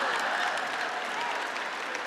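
A large audience laughing and applauding, the noise slowly dying down.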